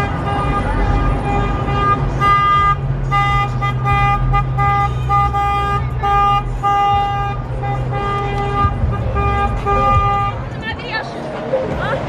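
A car horn honking in a long run of repeated short toots that stop about ten seconds in, over the low rumble of slow-moving cars' engines.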